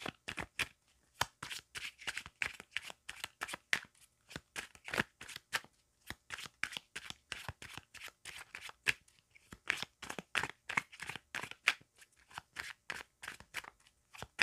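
A tarot deck being shuffled by hand: a quick, uneven run of card slaps and flicks, several a second, broken by a few short pauses.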